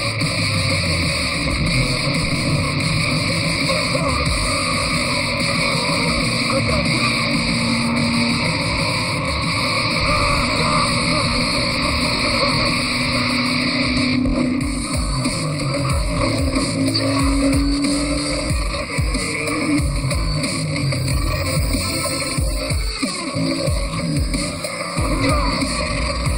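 Action-film chase soundtrack: a music score mixed with speeding car engines, with a few rising engine notes.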